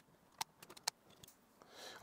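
A few faint, sharp clicks, the two clearest about half a second apart, as small screwdriver bits are handled and tried in a precision screwdriver.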